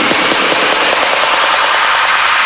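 Build-up in a trap/electronic dance track: a loud, steady wash of white noise with the kick drum dropped out, the riser that sets up a drop.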